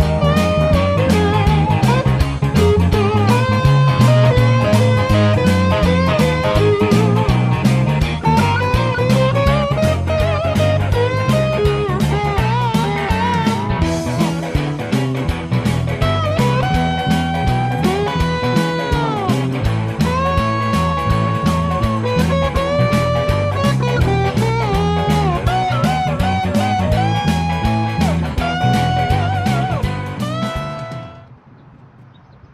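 Background music: electric guitar with bending notes over a steady beat.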